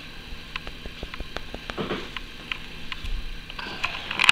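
Handling noise from a plush toy being turned in the hands close to the microphone: scattered light clicks and brief soft rustles, with a louder rustle near the end.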